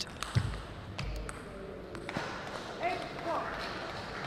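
Table tennis ball clicking off bats and the table in a short rally: several sharp taps in the first second or so, and one more a little after two seconds.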